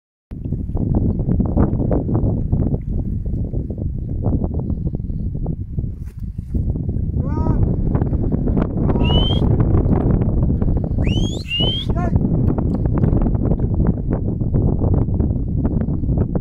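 Wind buffeting the microphone with a steady low rumble and rustle. A few short rising bird whistles come through between about seven and twelve seconds in.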